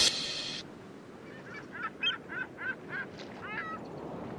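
Bird calling in a quick string of about seven short honks over a faint steady outdoor hiss, just after the music cuts off about half a second in.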